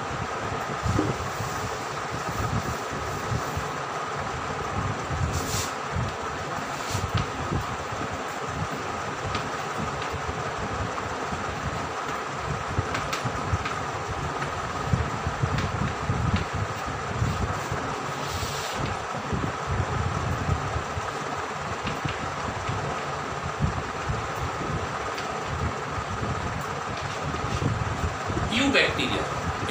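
Chalk tapping and scraping on a blackboard as a heading is written, with a few brief sharp clicks. Under it runs a steady background hum and hiss.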